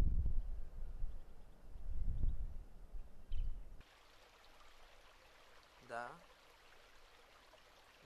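Loud, gusty low rumble, like wind buffeting the microphone, stops suddenly about four seconds in. It gives way to a quiet, steady rush of running water, with one short rising call about six seconds in.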